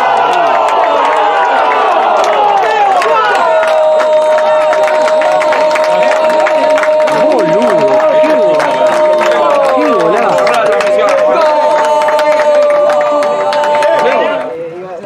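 Football TV commentator's goal shout: excited shouting at first, then from about three seconds in a single long held "gol" call that lasts about ten seconds, over a cheering crowd.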